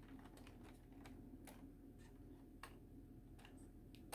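Near silence with faint, irregular clicks and taps from fingers handling a plastic scale model, over a low steady hum.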